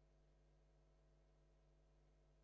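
Near silence: only a faint, steady hum.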